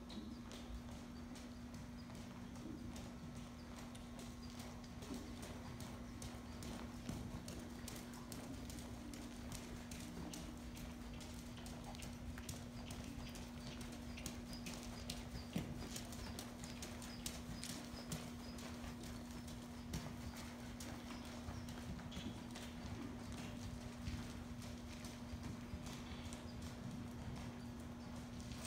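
A ridden horse's hoofbeats on the sand footing of an indoor arena, an irregular run of soft footfalls, over a steady hum.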